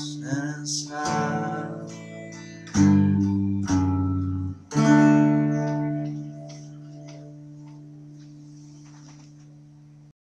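Blue hollow-body electric guitar playing the closing chords of a song, with a last sung phrase in the first seconds. Two strummed chords land about three and five seconds in, and the final one is left to ring and slowly fade away.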